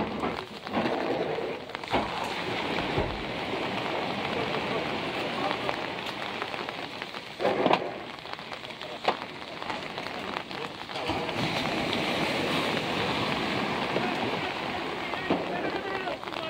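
Steady rain falling, a continuous even hiss, with a few brief voices in the middle.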